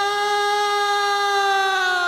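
A singer's voice holding one long, steady note with no drums under it, the pitch sinking slightly near the end.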